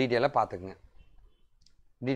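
A man speaking briefly for under a second, then near quiet with a faint click.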